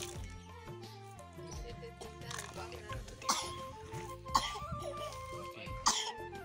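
Background music, a melody of held, stepping notes, with a few short sharp sounds over it between about two and six seconds in.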